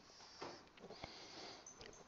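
Near silence, with faint rubbing of a felt-tip marker drawing a line on a whiteboard and a single faint click about a second in.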